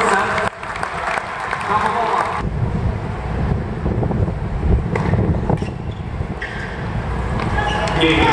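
Spectators talking around a tennis court, with a couple of sharp knocks of a racquet striking a tennis ball around the middle.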